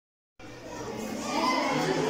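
Dead silence, then about half a second in, the sound cuts in abruptly with the chatter of children's voices in a classroom, growing louder.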